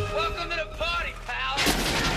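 Action-film soundtrack: a man's shouted voice with sharply rising and falling pitch, then heavy gunfire breaking in about a second and a half in.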